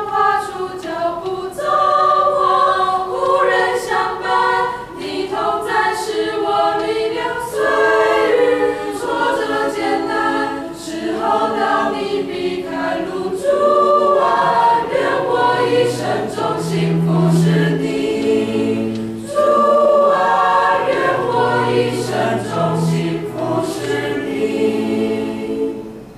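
A group of voices singing a Christian hymn together in choir fashion, with a lower line joining about halfway through; the singing fades at the end.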